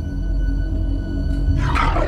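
Dark, low droning horror-film score with a deep rumble and held tones underneath.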